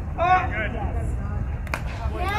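A voice calls out briefly near the start over a steady low outdoor rumble, and a single sharp click follows near the end.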